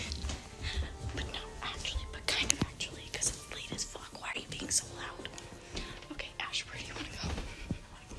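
A girl whispering close to the microphone in short, breathy phrases, with faint music underneath.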